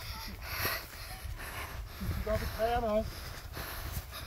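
Footsteps swishing through long grass on a narrow path, over a low rumble on the moving microphone.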